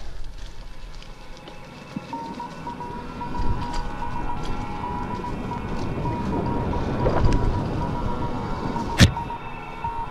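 Mountain bike rolling fast along a dirt singletrack: rumbling tyre and trail noise with wind buffeting the helmet camera, scattered rattles, and a sharp knock about nine seconds in. A steady high whine comes in about two seconds in and holds.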